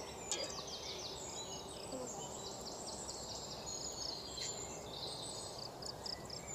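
Outdoor ambience: quick, high chirping trills repeating over a steady background hiss.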